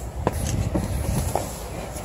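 Handling noise and a low rumble with three light knocks, as someone settles into a car's driver's seat holding the phone.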